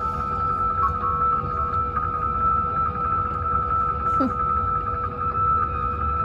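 A film soundtrack played through screening loudspeakers: eerie ambient music of steady held tones over a low rumble.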